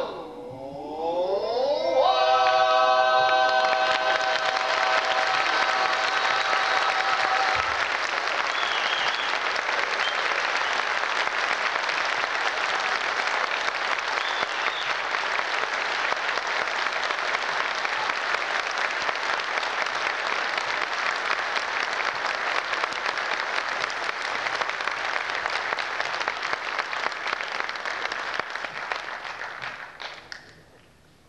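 Barbershop quartet's four male voices slide up into a final held chord that ends about seven seconds in. Audience applause rises over the chord and carries on steadily, dying away near the end.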